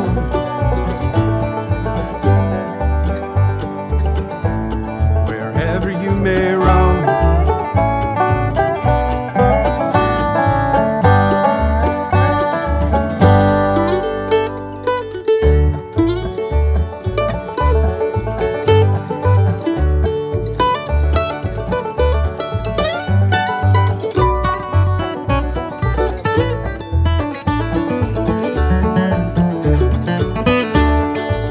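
Instrumental break of an acoustic bluegrass string band: banjo and acoustic guitar over a steady bass beat. About halfway through, the beat drops out briefly on a held low note, then picks back up.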